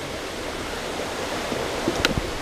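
Steady rush of a river flowing, with a couple of faint knocks near the end.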